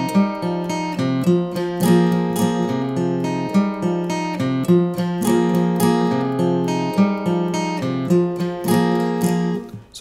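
Acoustic guitar strummed in a quick, even pattern, with two accented upstrokes between the chord figures and changes of chord along the way; the strumming stops just before the end.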